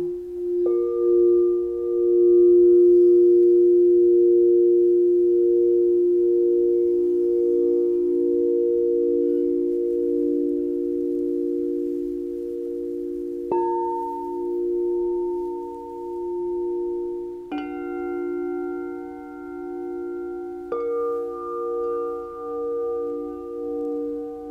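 Crystal singing bowls ringing with long, pure, held tones that waver slowly in loudness. A mallet strikes a bowl four times, about a second in, a little past halfway, and twice more near the end, and each strike adds a new, higher note over the low tones that keep sounding.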